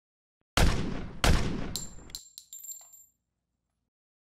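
Gunshot sound effect: two loud shots a little under a second apart, each with a trailing echo, then a few light metallic clinks and rings that die out about three seconds in.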